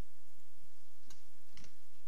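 Two light clicks, about half a second apart, from small hobby tools and plastic parts being handled.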